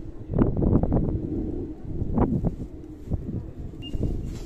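Wind noise rumbling on the microphone, with a cluster of sharp knocks about half a second in and a few more around two seconds in.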